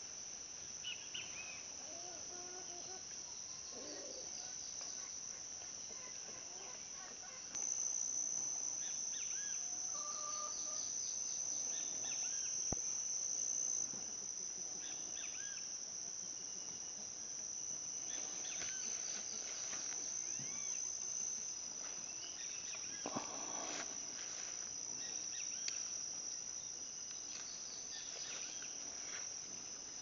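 A steady, high-pitched chorus of insects chirring, louder for several seconds about a quarter of the way in. Faint rustles of foliage being handled are heard over it.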